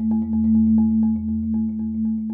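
Marimba played with mallets: rapid, evenly repeated strokes, about seven a second, hold a low chord in a mellow roll.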